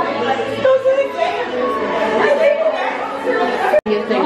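Excited chatter of several women's voices talking and exclaiming over one another, broken by a brief cut just before the end.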